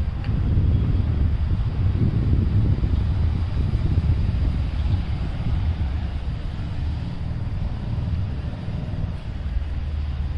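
Wind buffeting a phone's microphone: a low, fluttering rumble that rises and falls, easing a little in the second half.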